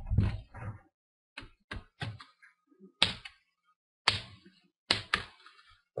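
Plastic retaining clips of an ASUS U46e laptop's screen bezel snapping loose as the bezel is pried up by hand. Small clicks come about a second and a half in, then sharper snaps about 3, 4 and 5 seconds in. The snapping is the sign that the bezel is coming free.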